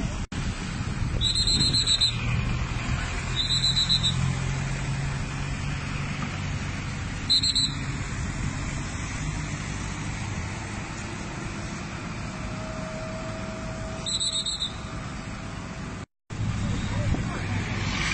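Voices of people talking beside a road over the steady rumble of traffic and idling vehicles, with four short high-pitched chirps scattered through.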